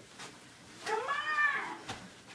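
A single drawn-out meow, rising and then falling in pitch over about a second.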